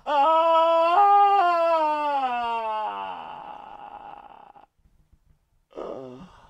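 A man's long wailing cry of despair, held about three seconds and sliding slowly down in pitch before trailing off into a breathy sob. After a moment of silence, a short sob or breath comes near the end.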